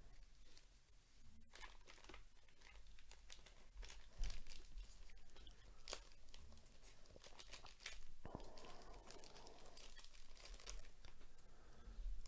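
Black plastic wrapper around a trading card being torn open and crinkled by gloved hands: faint irregular crackling and small rips, with louder tears about four and eight seconds in.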